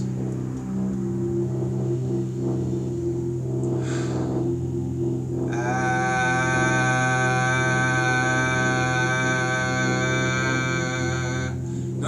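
Soft background music with a low steady drone. About halfway through, a man's voice joins it, chanting one long 'ah' at a steady pitch for about six seconds: the vowel sound of the heart chakra in chakra toning.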